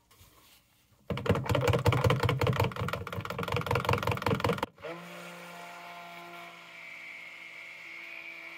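Immersion stick blender mixing vanilla stabilizer into cold process soap batter in a plastic pitcher. About a second in it starts with a loud, rough, rapidly pulsing sound; it cuts off sharply just past halfway, then goes on as a quieter, steady hum.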